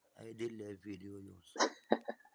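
A man's voice speaking in Moroccan Arabic, calling the name Younes, followed near the end by two short, sharp vocal bursts.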